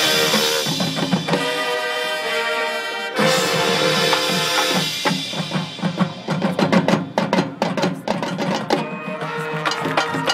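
High school marching band playing: brass chords held over drums, with a sudden louder entry about three seconds in. In the second half the percussion takes over with a run of rapid, sharp drum strikes under the sustained brass.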